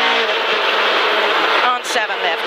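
Rally car's engine running hard under load, heard from inside the cockpit, with a brief dip in level near the end.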